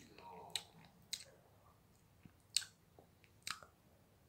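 Hard candy cane being crunched between the teeth: four short, sharp cracks spread over a few seconds.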